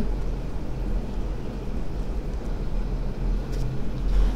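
Steady low background rumble with a faint hum, with no distinct event.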